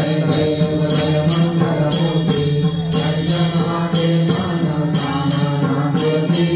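A group of voices chanting a devotional bhajan over steady strokes of small hand cymbals, about three strokes a second.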